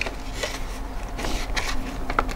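Light clicks and rustling clatter from an UPPAbaby Vista stroller frame being handled at its fittings: one click at the start, another about half a second in, and a run of small rattles in the second half.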